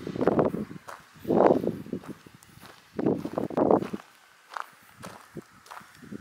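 Footsteps crunching on loose gravel: a few slow, separate steps, then only faint scuffs after about four seconds.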